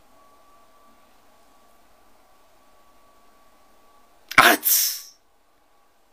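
A faint steady whine, then about four seconds in a man's sudden, loud vocal outburst lasting under a second.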